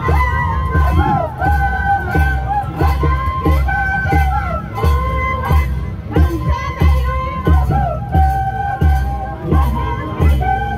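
Andean rural carnival music from Ayacucho: a steady low drumbeat under a high melody of held, gliding notes, with crowd noise and shouting voices.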